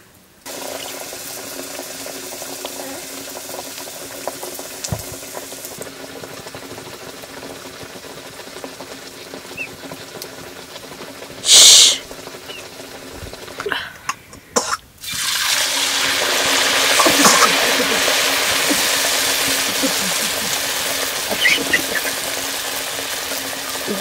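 Wheat flatbread deep-frying in hot oil in an iron wok: a steady sizzle that grows louder and fuller after about fifteen seconds. A short, loud hiss about halfway through.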